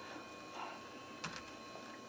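Faint background hiss with a steady high-pitched whine made of a few held tones, and one faint click just past a second in.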